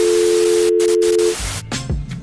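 TV-static hiss with a steady two-pitch test tone, a colour-bars transition effect, that cuts off suddenly about a second and a half in. Background music with a beat carries on after it.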